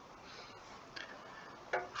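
Quiet room hiss with a single faint tick about half a second in, then a voice starting to speak just before the end.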